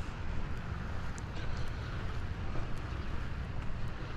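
Steady outdoor background noise with a low rumble and soft hiss.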